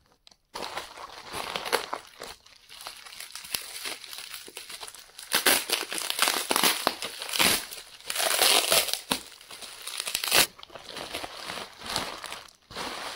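Plastic bubble wrap crinkling as it is crumpled and peeled back by hand to unwrap a ball-shaped object. It comes in irregular bursts, louder in the second half.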